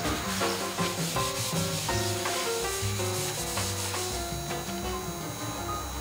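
Abrasive Scotch-Brite pad scrubbing wet, rusty bare sheet metal on a car body: a steady rubbing hiss that eases off near the end. Background music with held notes plays underneath.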